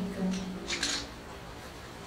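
A woman's voice trailing off at the end of a phrase, with a couple of short hissing consonants, then a brief pause with faint room noise.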